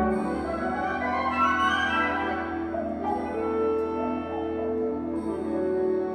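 Concert wind ensemble playing a slow passage of long held notes and chords, the harmony shifting every second or two.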